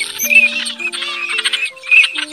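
Recorded teal calls, quick high chirps repeating several times a second, mixed over background music with held notes.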